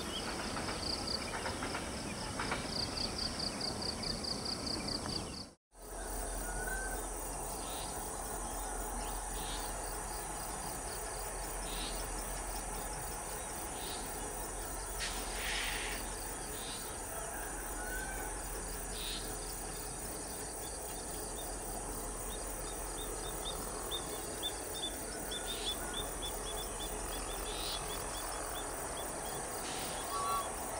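Outdoor ambience: insects chirping in a fast, even pulse with birds calling, then after an abrupt break about five seconds in, a steady low hum with occasional short bird chirps.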